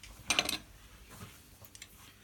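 A metal G-clamp being set across the work, clinking once against the angle plates about a third of a second in, then a few faint light taps as it is positioned.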